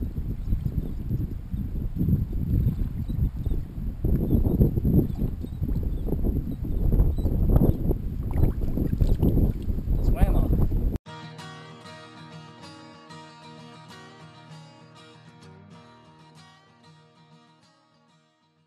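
Wind buffeting an open-air camera microphone, with water moving against a kayak, for about eleven seconds. Then a sudden cut to guitar music that fades out.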